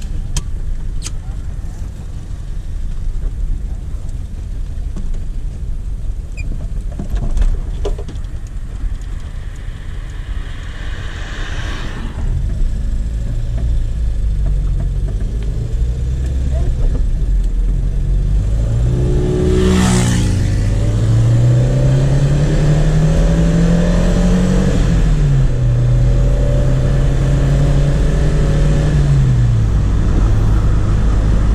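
A 1989 Chevrolet Chevette 1.6 SL's four-cylinder engine, heard from inside the cabin as the car pulls away and drives. It runs low for the first part. About twenty seconds in there is a brief knock, and the revs climb steadily for several seconds, drop back at a gear change, hold, and fall off again near the end. The carburettor's jets and needle were freshly reset to cure an earlier stumble on revving.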